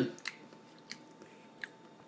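A person chewing a bite of soft, fluffy buttermilk pancake with the mouth mostly closed: a few faint, short mouth clicks spaced well apart.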